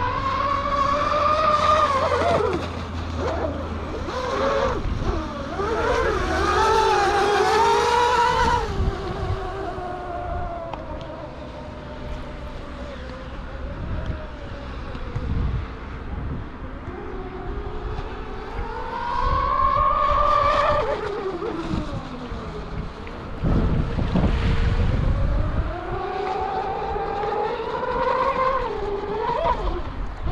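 A radio-controlled model racing boat's motor whining at high pitch, rising and falling in four swells as the boat makes runs out on the water.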